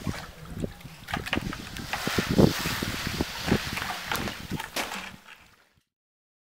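Irregular knocks and scraping over rough wind noise on the microphone, fading out near the end.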